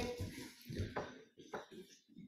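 Faint, indistinct voices just after a woman's speech trails off.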